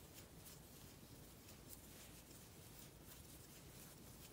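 Near silence with faint, irregular soft ticks and rustles of a crochet hook pulling yarn through stitches.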